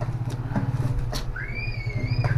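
Steady low rumble of a running motor, pulsing fast. There is one sharp click a little after a second in as scissors cut the packing tape on a cardboard box, and a brief high wavering tone near the end.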